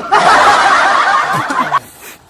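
Two young men laughing loudly together, high-pitched overlapping laughter that breaks off suddenly just before the end.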